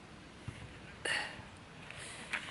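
Green bean pods being picked off the plants by gloved hands: one short, sharp snap about a second in, with a fainter click before it.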